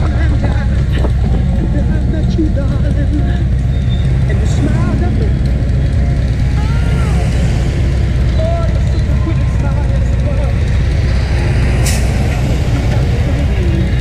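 Motorcycle engines running at low road speed, a steady low drone, as the group rolls slowly up to an intersection. A brief sharp hiss sounds about twelve seconds in.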